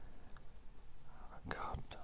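Low room sound, then a breathy, whispered bit of a man's voice near the end.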